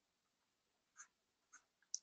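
Near silence broken by three faint clicks of a stylus tapping on a pen tablet while writing: about a second in, half a second later, and just before the end, the last one the loudest.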